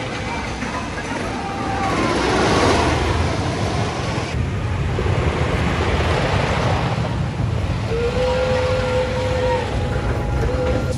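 Wooden roller coaster train running along its track, a rushing rumble that swells about two to three seconds in and carries on steadily. Near the end a long held voice rises above it.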